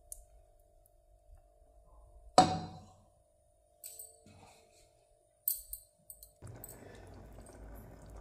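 A single sharp clink of metal about two and a half seconds in, like a spatula knocking on the rim of a steel saucepan, with a brief ring. Near the end a soft, steady hiss and bubbling rises as the chutney mixture in the pan starts to simmer.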